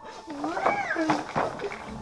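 A short wavering, meow-like call that rises and falls in pitch a few times, quieter than the talk around it. A low steady hum comes in near the end.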